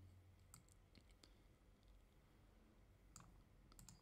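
Near silence, with a few faint computer clicks spread through it.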